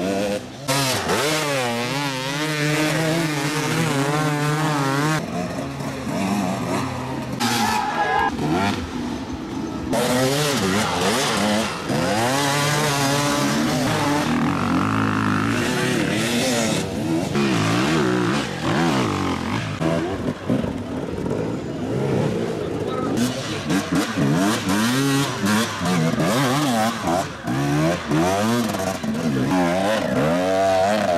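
Enduro dirt bike engines revving up and down over and over, the pitch rising and falling with short bursts of throttle. At times two engines overlap.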